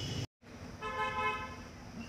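A vehicle horn toots once, a single steady note of under a second about a second in, just after a brief gap in the sound.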